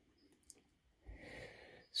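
Mostly quiet, with one faint click about half a second in. Near the end comes a soft breath drawn in.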